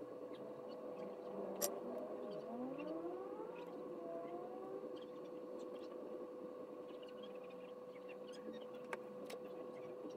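Faint steady hum, with a rising, siren-like wail from about two to five seconds in. A few light clicks come from the board and soldering iron being handled, the sharpest one near the start.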